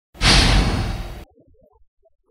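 Whoosh sound effect of a news-programme intro ident, with a deep low rumble beneath it. It lasts about a second, easing a little before cutting off abruptly.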